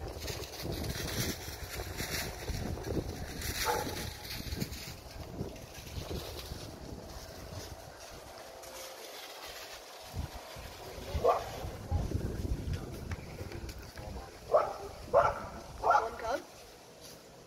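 A dog barking: one bark about eleven seconds in, then three quick barks near the end, over a low rumble of wind on the microphone.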